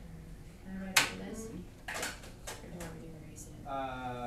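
Classroom noise: a few sharp clicks and knocks, the loudest about a second in, over faint voices, with a drawn-out voice starting near the end.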